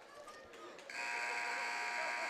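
Gym scoreboard horn sounding a steady buzz that starts about a second in, over low crowd chatter; the horn marks the end of the break between quarters.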